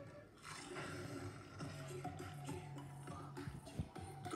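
Music from a television advertisement, with sustained low notes in the second half and no voice.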